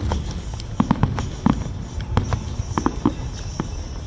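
Aerial fireworks shells bursting: a sharp bang at the start, then a quick, irregular run of about a dozen separate bangs with a low rumble under them.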